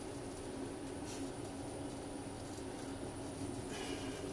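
Room tone: a steady low hum with a faint high-pitched whine.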